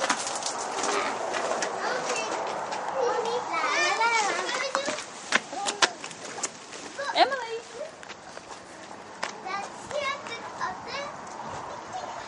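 Children's high-pitched voices calling and squealing at play, loudest about four and seven seconds in, with scattered sharp clicks throughout.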